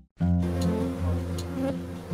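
A bee buzzing close up as it forages on a dandelion flower, a steady drone that wavers in pitch. It starts suddenly just after a brief silence at the start.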